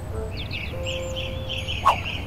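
A bird's repeated chirping call, about six short notes a second, over a steady low background rumble, with a brief swish near the end.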